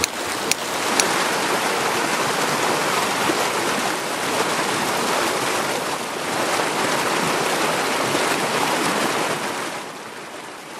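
Mountain stream rushing steadily. Two sharp taps about half a second and a second in: a steel hammer striking a chisel on stone.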